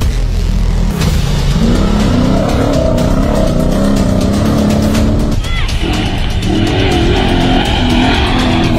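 Off-road rally truck engine revving hard at racing speed, mixed with a music soundtrack.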